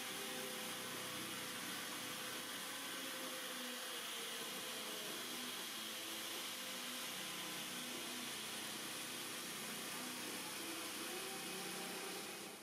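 Faint, steady hiss and whir of a handheld electric sheet-metal shear running as it cuts along a marked line in a metal sheet.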